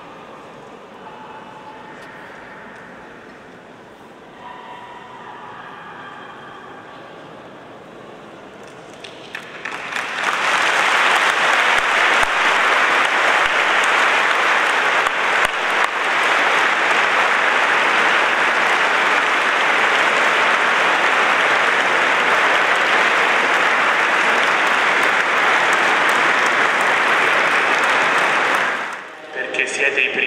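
Congregation applauding: a long, steady round of clapping that starts suddenly about a third of the way in and runs on until it dies away at the end.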